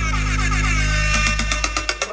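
Dance music: a held chord that slides down in pitch at first, then a quick run of drum hits in the second half.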